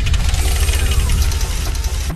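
Logo bumper sting of a TV show: a loud, dense, bass-heavy rumbling sound effect with a fast flutter running through it, cutting off suddenly at the end.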